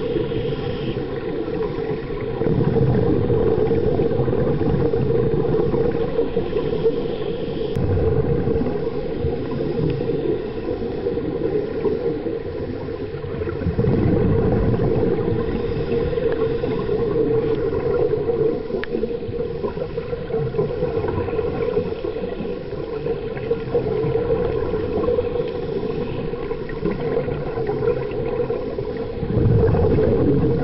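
Underwater sound picked up through a camera housing during a scuba dive: a continuous muffled rumble and bubbling from divers exhaling through their regulators, swelling a few times.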